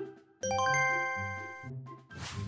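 A bright chime sound effect: several bell-like tones struck in quick succession about half a second in, ringing out for about a second, over light background music with a repeating bass pattern.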